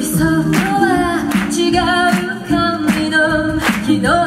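A female a cappella group singing live into microphones. Several voices hold wordless chords over a low, step-moving bass part, with short sharp vocal percussion sounds keeping a steady beat.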